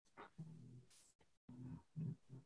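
Near silence, with a few faint, brief voice-like murmurs.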